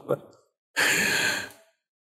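A man's single short, breathy exhale, an amused huff of breath under a second long, with no voiced sound in it.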